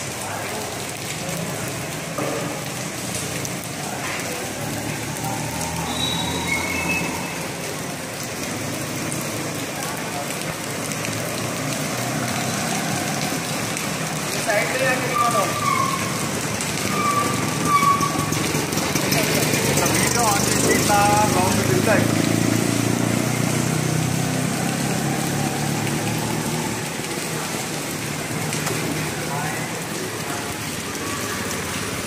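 Indistinct voices of people talking in the background over a steady noise, with the voices loudest roughly halfway through.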